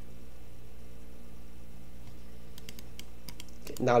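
A quick run of computer keyboard keystrokes and mouse clicks in the second half, over a steady low electrical hum. A man's voice starts at the very end.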